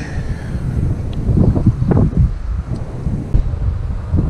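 Wind buffeting the camera microphone: a loud low rumble that swells and eases in gusts.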